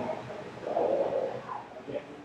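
Indistinct, low voices with no clear words.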